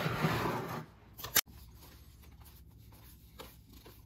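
Trading cards and a clear plastic card box being handled: a rustling scrape for about the first second, a single sharp click, then faint shuffling of the cards.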